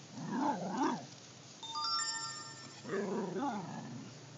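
Bull terrier making two drawn-out, wavering whining grumbles that rise and fall in pitch, one at the start and one about three seconds in. The owner takes the sounds as a sign that the dog is upset. Between them comes a brief ringing of several steady tones.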